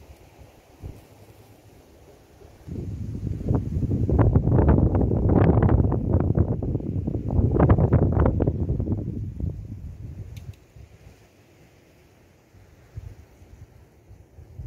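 Wind buffeting the microphone: a loud low rumble with crackles that starts suddenly about three seconds in and dies away about ten seconds in, with only faint wind noise before and after.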